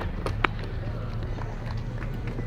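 Low, steady outdoor ballpark background with a single sharp knock about half a second in.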